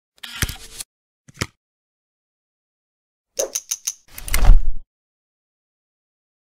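Intro sound effects of mechanical clicks and knocks: a short rattle, a single click, then four quick clicks about three and a half seconds in, followed straight after by a loud, heavy thud, with dead silence between them.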